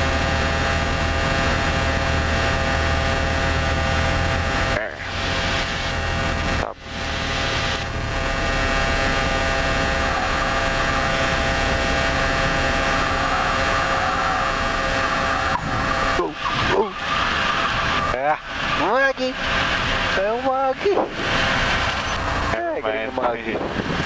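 Cessna 172P's four-cylinder Lycoming engine and propeller droning steadily at reduced power, heard inside the cabin during the approach and landing. The drone drops out briefly about five and seven seconds in. In the last third, short wavering tones come and go over it.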